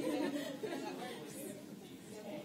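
Indistinct chatter of several people talking at once in a large meeting room, loudest in the first half second.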